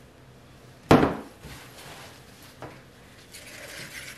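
A plastic bucket of soap batter set down on a stainless steel worktable: one sharp knock about a second in, then a much smaller knock a couple of seconds later.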